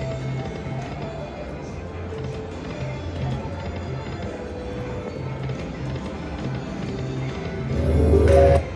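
Video slot machine playing its spin music with a steady low beat, over the hubbub of a casino floor, with a louder burst of machine sound near the end.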